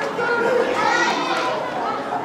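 Children's voices calling and chattering.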